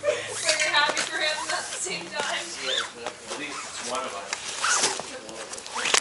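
Voices of people talking, with a sharp click just before the end.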